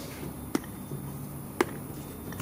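Two sharp small clicks about a second apart as the little locks on a Wabco clutch booster's housing are worked open with fingers and a screwdriver.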